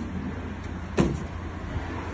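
Renault Trafic van's rear barn-door latch releasing with a single sharp metallic click about a second in as the door is opened, over a steady low rumble.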